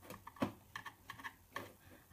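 Faint, irregular clicks and taps on a laptop, about eight in two seconds, the strongest about half a second in, as a document is opened.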